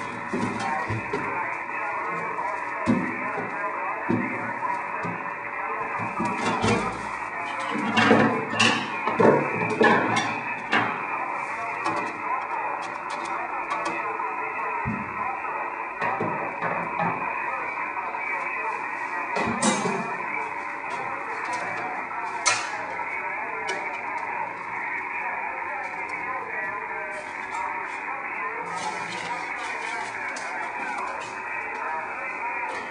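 Amateur radio transceiver receiver audio: steady narrow-band hiss with a steady whistling tone. Brief louder bursts rise out of the noise, most of them about eight to eleven seconds in.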